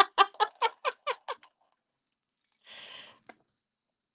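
A woman laughing, a quick run of short 'ha' pulses that dies away about a second and a half in. A short breathy rush and a light click follow near three seconds.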